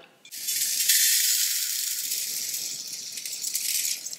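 Dry split lentils and rice poured from a steel plate into a stainless steel bowl: a continuous bright, hissy rattle of grains striking the metal. It starts just after the beginning and slowly tails off near the end.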